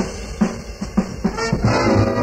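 Live big-band swing jazz: the band drops back while the drums strike a few sharp accents, then the brass and full ensemble come back in near the end.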